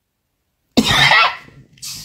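A man coughs once, sharply, about three-quarters of a second in, followed by a short hissing noise near the end.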